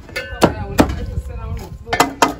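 A few sharp knocks of a utensil against a large metal cooking pot, with faint talking behind.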